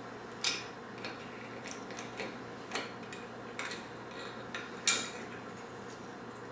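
Small tiles of a desktop tile calendar being handled and slotted into their holder: scattered light clicks and taps, with two sharper clacks about half a second in and about five seconds in, over a faint steady low hum.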